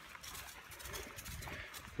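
Faint footsteps and the rustle and creak of a loaded backpack as a hiker walks a trail, a scatter of light irregular clicks.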